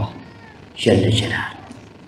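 A man's voice through a handheld microphone: one short, drawn-out, wordless sound lasting under a second, beginning about three-quarters of a second in, between spoken phrases.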